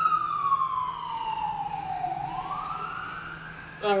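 Emergency vehicle siren wailing, its pitch falling slowly for about two seconds and then rising again.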